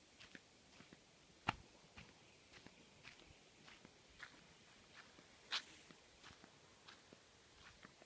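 Near silence with faint, irregular footsteps and small clicks, with one sharp click about a second and a half in and a louder one about halfway through.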